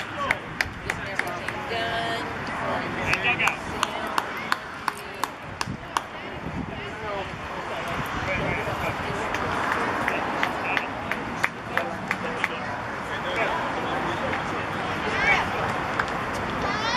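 Outdoor voices of players and spectators calling and chattering, with many sharp claps scattered through the first half.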